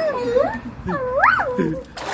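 A small dog whining: two high whimpers that rise and fall, the second in the latter half climbing higher than the first.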